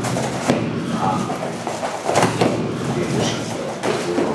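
Dull thuds from two people sparring in boxing gloves on a mat, a few sharp knocks standing out about half a second and two seconds in.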